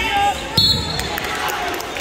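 A thump of wrestlers' bodies hitting the wrestling mat about half a second in, amid shouting from coaches and spectators.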